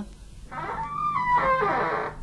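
An iron lattice gate creaking open, a drawn-out squeal that wavers and steps in pitch, starting about half a second in.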